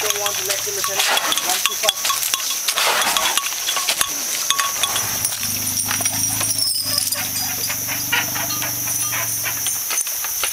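Dry leaf litter crackling under the feet of working Asian elephants walking through forest, over a steady high-pitched drone. A low steady hum comes in about halfway.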